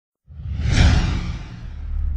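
Intro whoosh sound effect over a deep low rumble. It swells in about a quarter second in, peaks just before the first second and fades away, while the low rumble keeps going.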